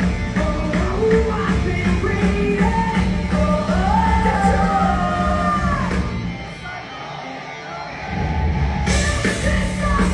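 Rock band playing live with sung vocals. About six seconds in the band drops back to a brief quieter break, then the full band crashes back in with cymbals about nine seconds in.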